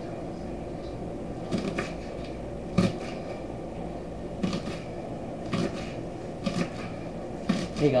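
A knife chopping scallions on a wooden cutting board: about seven separate knocks, unevenly spaced, over a steady low hum.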